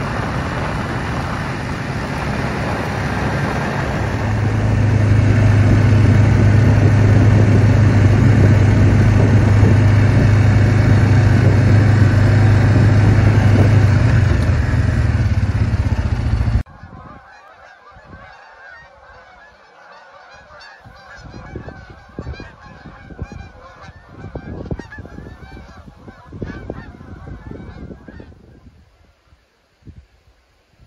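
A vehicle driving on a highway: loud, steady road noise with a low engine drone, cutting off suddenly about halfway through. Then, much quieter, a flock of geese honking continuously until near the end.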